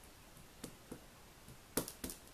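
Ink pad dabbed against a clear rubber stamp: a few light taps, then a sharper double tap near the end.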